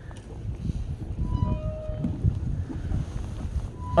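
Wind buffeting the microphone in an uneven low rumble, with a brief musical sound effect of a few short beeping tones about a second in and another short tone near the end.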